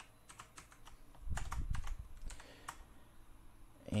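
Computer keyboard typing: irregular, quick keystroke clicks, with a duller, louder bump about a second and a half in.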